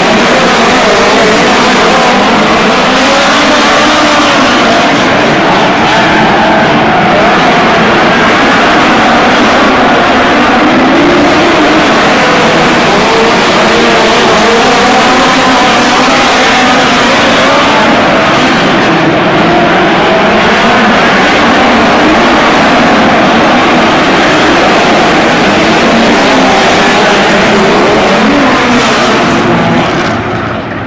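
A pack of midget race cars' engines running hard on a dirt oval, loud throughout, their pitch rising and falling as the cars lift into the turns and accelerate out of them. The engine noise drops off sharply at the very end.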